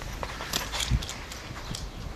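A German shepherd and a cat scuffling on stone paving: a few sharp clicks and scrapes, with a low thump just under a second in.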